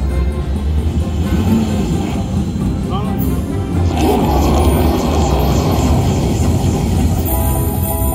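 Huff N' More Puff slot machine's bonus music with a long rushing blow sound effect starting about four seconds in, as the game's wolf blows on the reels to upgrade the house symbols into prizes.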